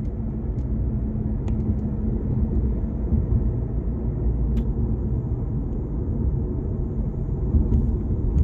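Steady low rumble of a car driving at moderate speed, road and tyre noise heard inside the cabin, with a couple of faint ticks.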